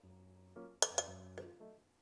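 Soft background music, with two quick metal clinks a little under a second in, as a stainless mesh strainer is set on the rim of a pot.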